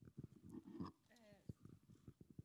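Very faint, off-microphone voice murmuring, with a few small clicks and knocks of handling noise, in the pause between speakers.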